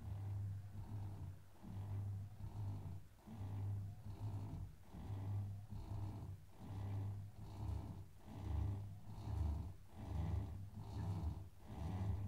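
Electric bell-ringing motor humming in a pulsing rhythm as it drives the chain wheel and swings a church bell up; the clapper has not yet struck, so no bell tone sounds.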